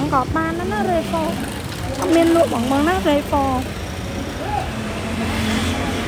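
A Toyota Tundra pickup's engine running low and steady as the truck is crept slowly into a parking space, under a person talking.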